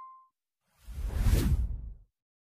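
A whoosh sound effect from an edited channel intro swells in about a second in, carrying a deep rumble, and cuts off sharply at the end. Before it, the tail of a bell-like ding fades out.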